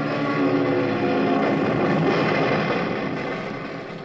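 Radio-drama sound effect of a small plane crashing into trees: a loud rush of engine and crash noise that fades away over the last second or so.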